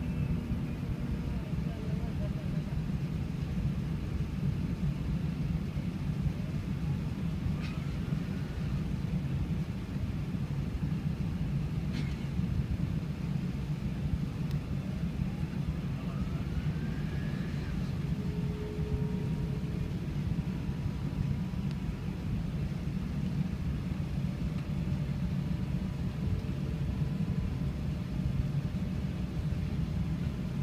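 Steady low cabin rumble of an Airbus A380-800 taxiing on the ground, heard from inside the passenger cabin. Two faint clicks come about 8 and 12 seconds in.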